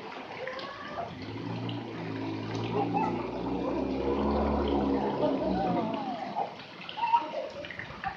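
Swimming-pool ambience: running and splashing water with scattered distant voices of people and children. A steady low hum swells in the middle and fades out about six seconds in.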